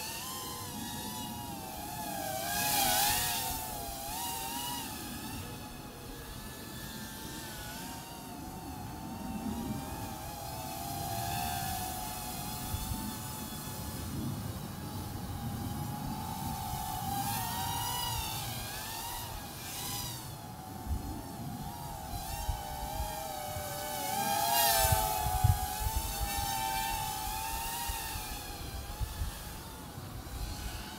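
Micro quadcopter's four 8520 brushed coreless motors and propellers whining in flight, the pitch wavering up and down with throttle. The whine grows louder a few times, around 3 s, 17 s and 25 s in, with a few low thumps near the loudest pass.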